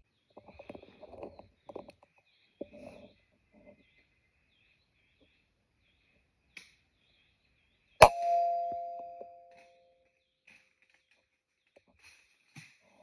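A single air rifle shot: a sharp crack about eight seconds in, followed by a metallic ring that dies away over about two seconds.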